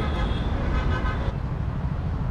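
Steady low rumble of road traffic passing on a highway.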